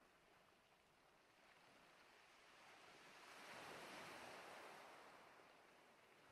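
Near silence with a faint, soft whoosh that swells slowly to a peak about four seconds in and fades away again.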